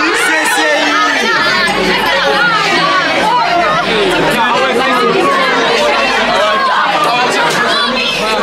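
A packed crowd of young people talking and calling out over one another: a loud, steady babble of many voices.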